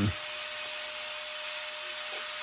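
A small motor running steadily, a faint even hum under a steady hiss.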